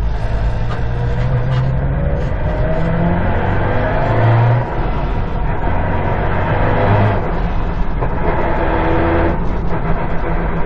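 Subaru WRX STI's turbocharged EJ20 flat-four heard from inside the cabin, accelerating through the gears: the engine note climbs, breaks off briefly about four and a half seconds in and again around seven seconds at the gear changes, then runs steadier.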